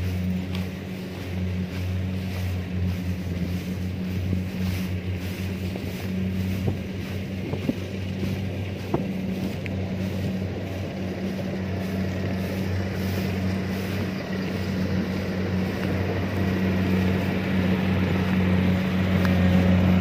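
Kubota DC-70 combine harvester's diesel engine running steadily as it harvests rice, a low, even hum that grows louder toward the end as the machine comes close.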